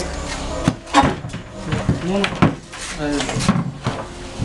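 People talking in a room, with several sharp clicks and knocks mixed in during the first half.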